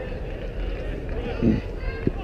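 Several people talking in the background, with a short louder exclamation about one and a half seconds in.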